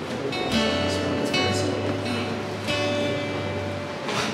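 Acoustic guitar strummed: three chords, each ringing on until the next, the second about a second in and the third near three seconds.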